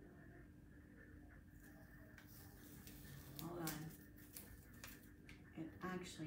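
Faint handling sounds of blue painter's tape and kraft paper being pressed onto a metal file cabinet: soft rustling and a few light clicks over a steady low room hum, with a brief voice-like hum about halfway through.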